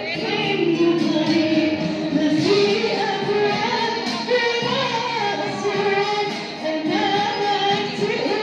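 A group of voices singing together, with women's voices most prominent and notes held long.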